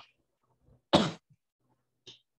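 A person gives one short cough about a second in.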